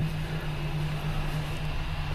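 A steady low hum over faint background hiss: room tone with no distinct events.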